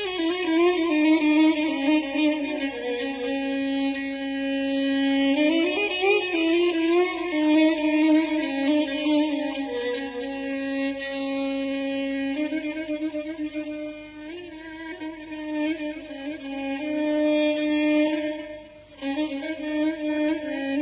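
Solo violin playing a Persian classical melody in the Afshari mode, coming in suddenly out of near silence with long held notes and sliding ornaments, with a brief break near the end.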